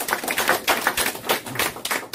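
Audience applause: many hands clapping in quick, irregular claps.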